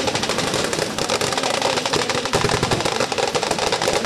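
Automatic gunfire in rapid, continuous bursts, the shots coming close together without a break.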